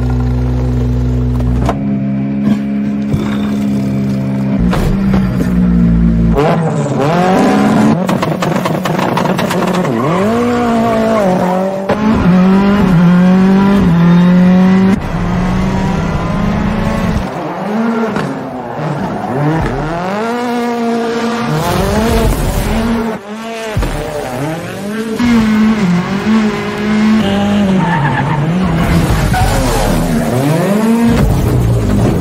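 Ford Fiesta race car's 650 hp engine held steady at first, then revving hard with its pitch climbing and dropping over and over as it is driven and slid, with tyre squeal.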